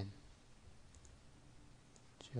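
A few faint computer-mouse clicks over near-silent room tone.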